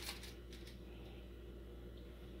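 A few brief rustles in the first second, from hands laying roasted asparagus spears onto lettuce on a plate, then faint room tone with a steady low hum.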